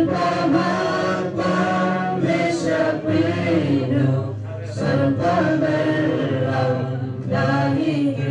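A group of voices singing together, a slow song in long held notes, the sound dipping briefly between phrases.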